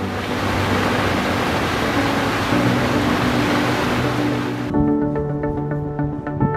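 Small waterfall's white water rushing steadily over rocks, heard over background music. The water sound cuts off suddenly about four and a half seconds in, leaving only the music.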